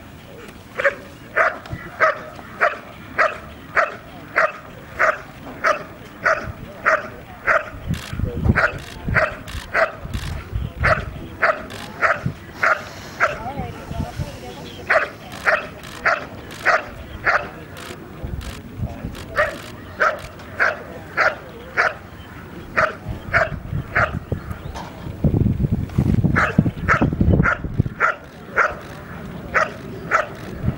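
A protection working dog barking at a helper hidden in the blind during the hold and bark, a steady run of sharp barks at about two a second with a few short pauses. A low rumble rises twice under the barking, about eight seconds in and again near the end.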